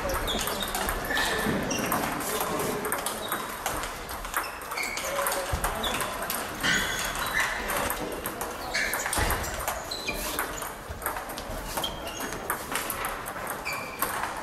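Table tennis balls pinging on tables and clicking off bats from many tables at once in a sports hall, in an irregular patter of short, clear knocks, over a murmur of voices.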